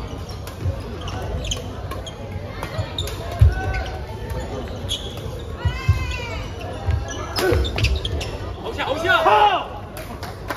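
Badminton doubles rally: repeated sharp cracks of rackets striking the shuttlecock, mixed with low thuds of players' feet landing on the court floor.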